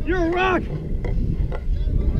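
A loud, drawn-out shout from a nearby person in the first half-second, followed by fainter distant shouts. Steady wind rumble on the microphone runs underneath.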